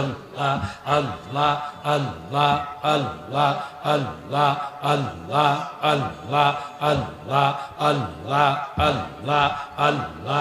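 Men's voices chanting "Allah" in Sufi zikir, in a steady rhythm of about two chants a second.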